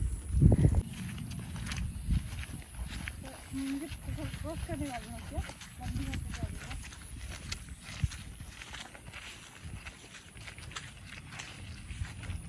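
Footsteps of several people in sandals through wet grass on a muddy path, with scattered light clicks and rustles, and a faint voice talking about four to six seconds in.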